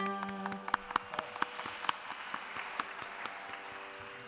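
The final held note of a Carnatic vocal piece breaks off about half a second in. The audience then applauds, a few sharp single claps thickening into a patter that fades toward the end, with the tanpura's drone still sounding faintly underneath.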